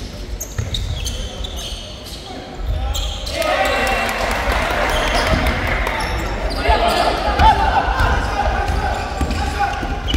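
Basketball game in a large gym: the ball bouncing on the wooden court amid players' and spectators' shouting voices, which swell and grow louder about three seconds in.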